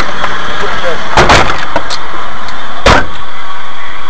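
Two loud thumps about a second and a half apart inside a stopped car, over a steady low rumble that drops away shortly after the second thump, with brief muffled voices between them.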